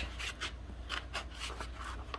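A sheet of scrapbook paper rustling as it is handled and slid across the work surface, with a few short crinkles in the first half-second.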